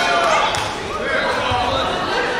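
Voices calling out in a large hall over the soft thuds of taekwondo fighters' feet hopping and stepping on the competition mat.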